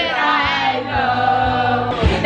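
A group of young people singing loudly together in a karaoke room, several voices in unison over the karaoke backing track.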